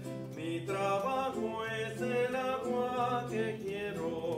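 Male voice singing a hymn with acoustic guitar accompaniment, a steady sung melody over the guitar.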